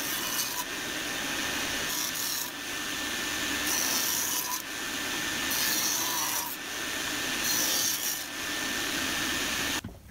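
Table saw running and cutting a rabbet in half-inch Baltic birch plywood, with a steady whine under the cutting noise. The cutting noise swells and eases every second or two as the board is fed along the fence, then stops abruptly near the end.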